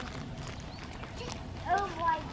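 A short high-pitched vocal call with an arching pitch, the loudest sound, near the end, over faint scattered clicks.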